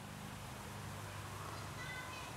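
Faint outdoor background hum with a brief, faint high-pitched animal call near the end.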